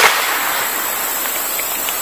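Steady outdoor background hiss with no distinct event, after a brief click right at the start.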